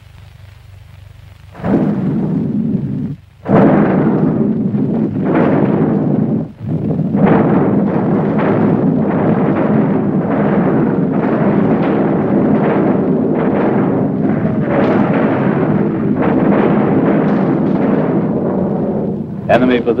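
Artillery barrage: a dense run of gun blasts one after another, starting about two seconds in, with a brief break just after three seconds.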